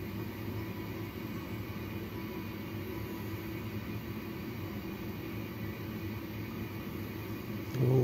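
Steady hum and hiss of neonatal intensive care equipment, with no distinct events.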